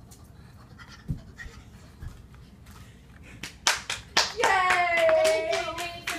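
Two soft thuds, then a few sharp hand claps about three and a half seconds in, followed by a young boy's voice holding one long drawn-out vowel whose pitch slowly sinks.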